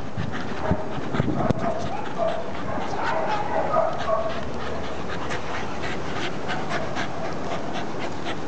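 Dogs panting as they play around a rope toy, with scattered light clicks and some short wavering high notes in the first half.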